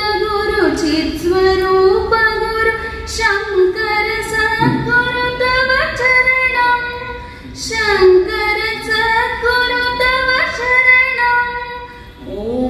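A woman singing a devotional prayer song (a guru hymn) solo and unaccompanied, in long held notes that step up and down in pitch, with a short breath between phrases about midway.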